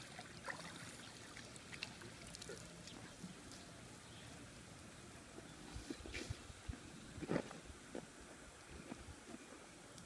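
Faint splashing and lapping of pool water, with a few small sudden splashes and knocks, the largest about seven seconds in.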